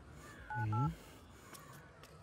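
Two quick touch-tone beeps from a smartphone keypad as a number is dialed, each beep two tones at once, with a brief low hum under them.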